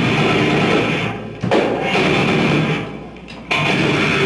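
Death metal band playing live: heavy distorted guitars, drums and growled vocals in a stop-start riff. The band drops out briefly just after a second in, comes back with a hit, then drops out again for nearly a second near the end before crashing back in together.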